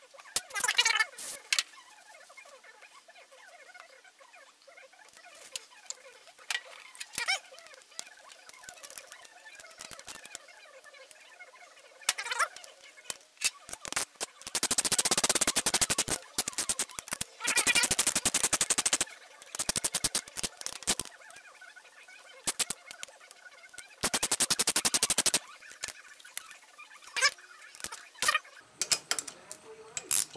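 A ratchet tool clicking in three rapid runs of one to two seconds each, about halfway through and again near the end, as screws are driven into a small two-stroke chainsaw engine. Scattered light clicks and taps of tools come in between.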